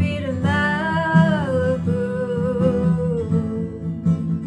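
Lindo acoustic guitar strummed under a woman's voice singing one long held note, which bends down about a second and a half in, then holds and fades shortly before the end.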